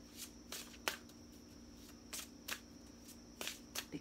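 A deck of tarot cards shuffled by hand, the cards slapping together in about seven irregular soft snaps. A faint steady hum runs underneath.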